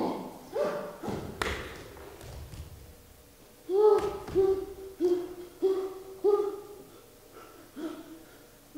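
A few low thuds on a stage floor, then a person's voice giving a run of about five short, same-pitched calls in quick succession, with one more near the end.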